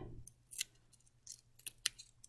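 Faint, scattered crackles and ticks of parchment paper and green painter's tape as gloved fingers peel a cut-out tape circle off its parchment backing, with a sharper tick near the end.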